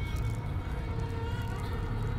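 Horror film soundtrack: a low, steady drone with a few faint held tones above it.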